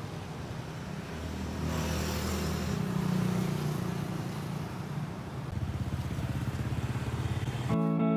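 Engine hum and road noise of a moving road vehicle, heard from on board, the engine note shifting a few times. Guitar music comes in near the end.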